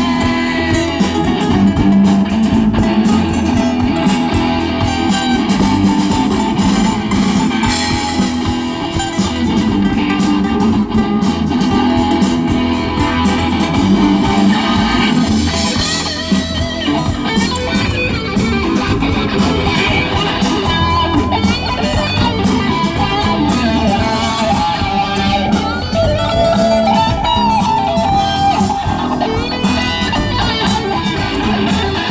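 Live band playing an instrumental passage with no singing: electric guitar and strummed acoustic guitar over bass guitar and drums.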